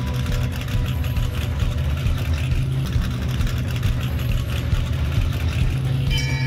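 A vehicle engine running with a steady deep rumble.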